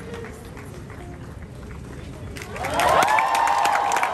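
Audience applause, scattered clapping in a large hall. About two and a half seconds in, a louder sound of several pitches together rises and then holds steady.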